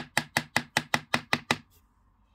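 A paintbrush rapped against the rim of a plastic tub of watery plaster: a quick, even run of about nine sharp taps, roughly five a second, that stops about one and a half seconds in.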